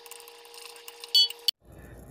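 A spoon clinks once against a glass bowl of melting chocolate about a second in, with a short high ring. Then the sound cuts off abruptly after a sharp click.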